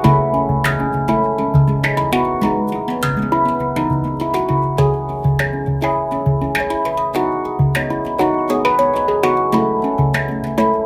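Two handpans played together in a duet: a quick, continuous stream of hand-struck steel notes that ring on, over a low bass note struck again and again.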